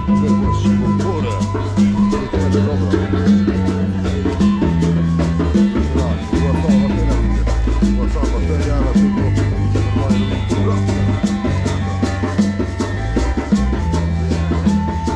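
Live band music with a steady beat: a prominent bass line moving between held notes, under quick, even percussion ticks.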